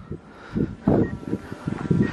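Wind buffeting the microphone in irregular low rumbles over a steady hiss.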